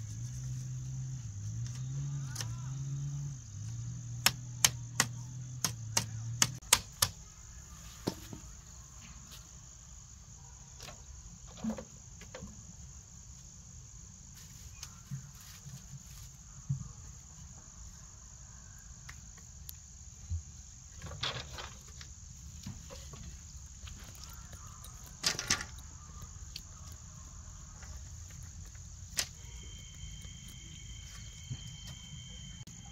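Split-bamboo slats clacking and knocking against each other in sharp clicks, in a quick run a few seconds in and in small clusters later, as they are woven and handled. Under them a steady high drone of insects, crickets or cicadas, and a low wavering hum that stops about six seconds in.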